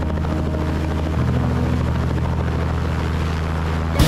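A light helicopter's rotor and engine running steadily while it hovers low over the ground, with a shift in the low tone of the engine and rotor about a second in.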